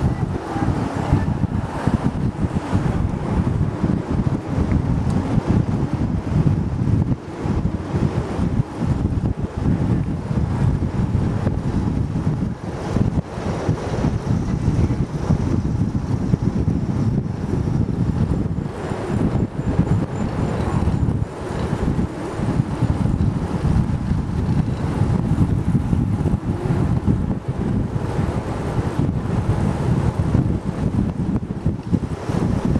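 Wind buffeting the microphone of a camera riding along on a moving bicycle: a steady, gusting low rumble.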